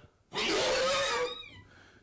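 A horse's loud, harsh squeal lasting about a second, its pitch falling at the end: a mare's warning squeal over her food.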